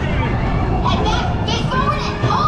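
Riders' excited chatter with high-pitched voices on a steel roller coaster train, over the steady low rumble of the train rolling along the track.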